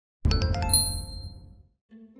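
A short chime-like intro sting: a quick run of bright ringing notes starting about a quarter second in, then ringing out and fading away by about a second and a half.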